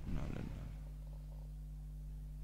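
Steady low electrical hum, with a faint murmur of voices in the first half second.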